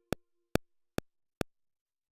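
Steady metronome clicks, a little over two a second, four in a row that then stop; the tail of a held synthesizer chord fades out under the first click.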